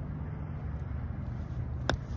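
A sand wedge striking the sand on a greenside bunker shot: one sharp hit near the end, over a steady low background rumble.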